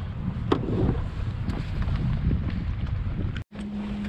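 Small sailboat motoring at top speed on its outboard: a steady low rumble of wind on the microphone and water along the hull. The sound drops out for a moment near the end.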